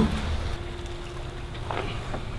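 A Kawasaki sport bike pushed by hand with its engine off: a low, steady rolling rumble from its tyres on the garage floor and paving, with a faint steady hum.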